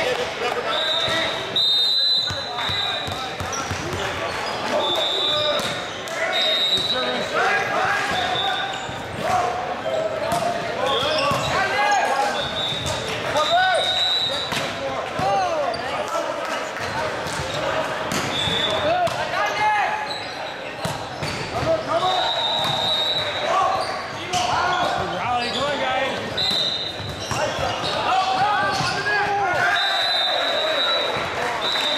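Volleyball match in an echoing gym: many voices talking and calling out, the ball being struck now and then, and sneakers squeaking sharply on the hardwood court again and again.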